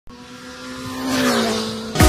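A motor vehicle driving past, its engine note getting louder and then dropping in pitch as it goes by, about a second in.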